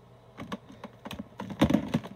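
Handling noise from a plastic telephone being turned over and moved: a run of short plastic clicks and knocks, starting about half a second in and growing busier and louder near the end.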